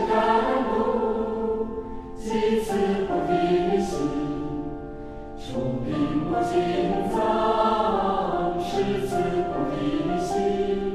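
Choir singing background music in long held chords, with short breaks between phrases about two seconds in and again about five and a half seconds in.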